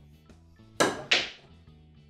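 Snooker balls knocking: two sharp clicks about a third of a second apart, over faint background music.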